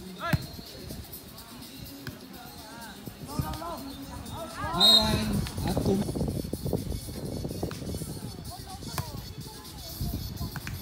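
Voices calling out over music, with a sharp slap of a volleyball hit just after the start and a loud burst of voices about five seconds in.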